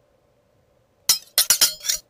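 Sword-slash sound effect for a title animation: a quick run of about five sharp, ringing metallic clinks starting about a second in and stopping suddenly.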